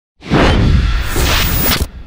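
Whoosh sound effect over a deep bass rumble, starting a moment in and cutting off sharply just before the end: the intro sting of an animated logo ident.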